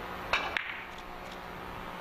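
Carom billiard balls struck in a three-cushion shot: two sharp clacks close together about a third of a second in, the cue striking the ball and then ball hitting ball, followed by a few fainter knocks as the balls run on around the table.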